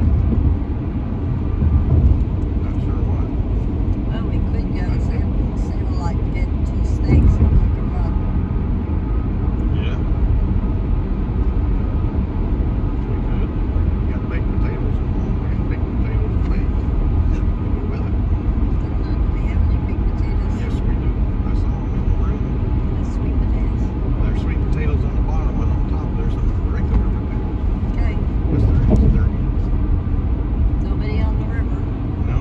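Steady road noise inside a moving car's cabin: tyres on the pavement and the engine running, heard as a low, even rumble.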